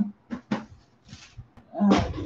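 A chair creaking: two short clicks in the first half-second, then a louder, longer creak near the end.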